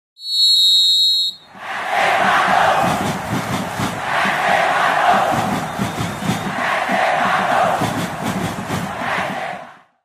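A whistle gives one steady, shrill blast of about a second. Then a football stadium crowd cheers and chants in swells that rise and fall every two to three seconds, cutting off just before the end.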